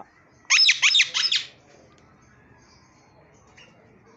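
Blue Indian ringneck parakeet giving a quick run of five sharp, high-pitched squawks, each falling in pitch, lasting about a second, starting about half a second in.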